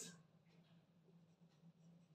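Near silence: faint strokes of a marker writing on a whiteboard over a low steady hum.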